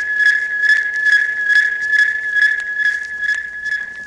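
Steady high-pitched radio signal tone with a light ticking pulse about four or five times a second, the signal that a broadcast is being interrupted for a news bulletin.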